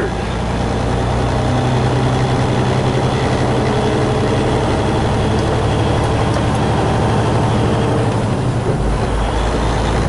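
Semi-truck diesel engine and road noise heard inside the cab while cruising with a loaded trailer: a steady drone.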